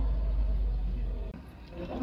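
A steady low rumble with faint background noise, which drops away about a second and a half in.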